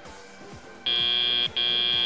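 FTC match-control buzzer sounding the end of the autonomous period: a high electronic beep starts almost a second in and repeats after a short gap, over background music.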